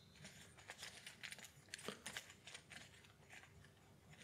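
Faint rustling and scattered light clicks of board-game components being handled as money is taken from the supply tray.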